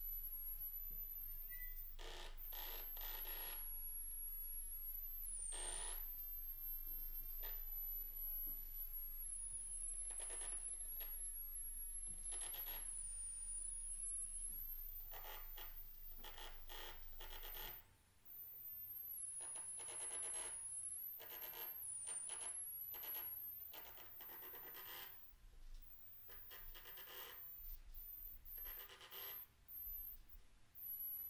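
Experimental improvised ensemble music: short scraping, breathy noise gestures, each lasting about a second, come and go over a thin, high whistling electronic tone that wavers in pitch. A low hum drops out about halfway through.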